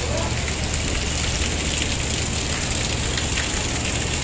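Torrential rain pouring steadily onto a paved street: a dense, even hiss of rain with a low rumble underneath.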